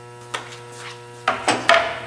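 Handling sounds on a metal table saw top: safety glasses set down and a sheet of acrylic brought onto the table, a light click early and then a cluster of louder knocks and a scraping rub near the end. A steady electrical mains hum runs underneath.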